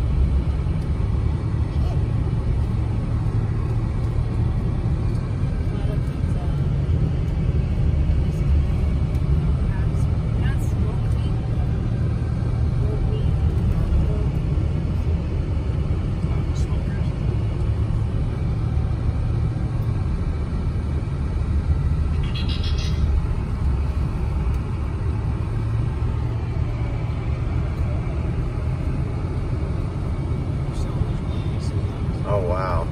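Steady low rumble of a car's engine and tyres heard from inside the cabin while driving. A brief high-pitched chirp comes about two thirds of the way through.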